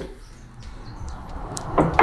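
Quiet pause with faint handling sounds: a stamped metal angle-grinder wheel guard being set down on a wooden table, a few light knocks about a second in.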